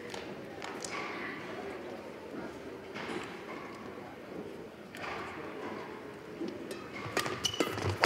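Murmur of voices echoing in a large indoor badminton hall between points. Near the end come a few sharp knocks and a short squeak from play on the court: rackets striking the shuttlecock and shoes on the court floor.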